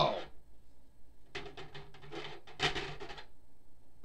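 Plastic wrestling action figures being handled and knocked against a toy wrestling ring: a run of short clicks and clatters in the middle, after the tail of a voice exclaiming "Oh!" at the very start.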